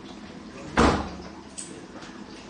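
A single loud thump, like a door slamming, about three quarters of a second in, with a faint click about a second later.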